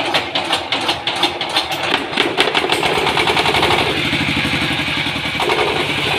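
Dongfeng 20 HP water-cooled hopper diesel engine, a single horizontal cylinder, starting up: irregular knocks at first, then about two seconds in it fires regularly and settles into a fast, steady knocking run.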